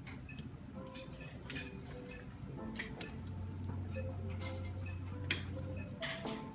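Haircutting scissors snipping over a comb in an on-comb cut: crisp, irregular snips, a few of them sharper than the rest. A low steady hum comes in about halfway through.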